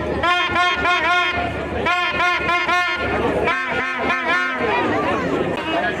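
A fan's horn tooting a beat of four short notes at the same pitch, three times over, over the chatter of a crowd of supporters.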